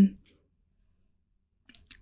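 A spoken "um" trailing off, then a pause with no sound, broken near the end by a few faint mouth clicks as the speaker draws breath to go on.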